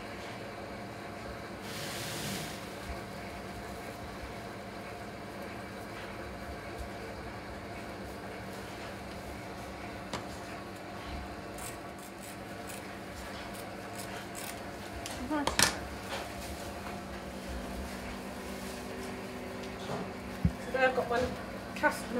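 Steady room hum with quiet handling noises as plaster of Paris bandage is measured, snipped with scissors and folded, including a few light clicks around the middle and one louder rustle about two-thirds of the way through.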